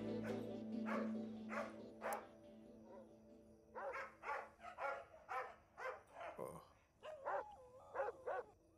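Dogs barking outside at night, faint and scattered at first, then a run of short barks about two a second through the second half, over a fading music drone.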